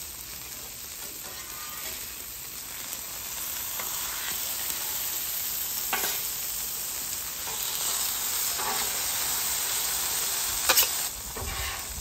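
Breaded country fried steaks sizzling in oil on a steel griddle; the sizzle grows louder over the first few seconds as the steaks go down on fresh oil. A few short knocks of a metal spatula and scraper on the griddle plate, the sharpest near the end.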